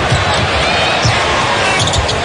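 Basketball dribbled on a hardwood court in a full arena, with repeated low thuds of the ball over steady crowd noise and a few sneaker squeaks about a second in.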